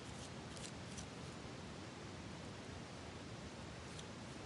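Faint steady room hiss with a few soft, brief rustles in the first second, from a paintbrush working watery paint into a mulberry paper flower.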